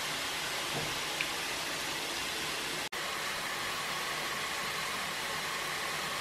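Steady sizzling hiss of pork chops cooking in a closed George Foreman electric contact grill, breaking off for an instant about three seconds in.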